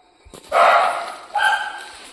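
Pet dog barking: one bark about a third of a second in, then a shorter, higher yip.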